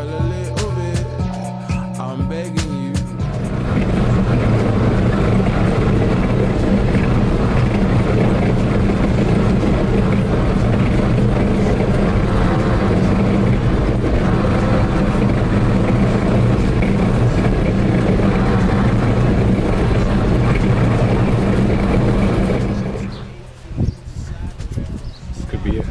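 Background music for the first three seconds, then the engine of a 17-tonne armoured personnel carrier running loudly with a steady low drone, heard from inside the driver's compartment. It drops away about a second before the end.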